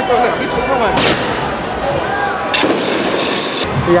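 Two sharp firework bangs, about a second in and again about two and a half seconds in, over a crowd shouting in the street.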